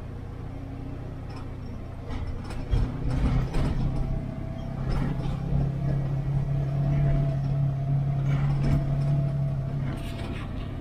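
Off-road vehicle's engine droning steadily, heard from inside the cab while driving a dirt road, growing louder about halfway through. A cluster of rattles and knocks from bumps comes a few seconds in.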